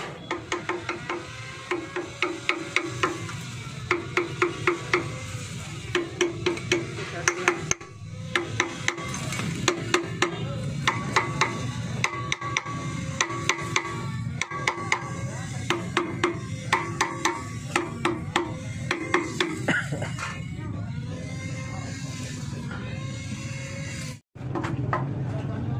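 Rapid metal-on-metal tapping in bursts of several quick strikes, some ringing briefly: a tool driven against the crankshaft of a small petrol engine to free the water pump from it. Music plays underneath.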